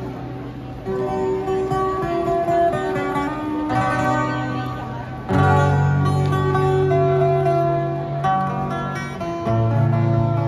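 Street busker playing an acoustic guitar, strumming held chords that change every second or two. It grows louder about five seconds in.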